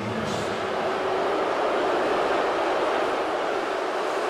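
Steady din of a hockey arena crowd.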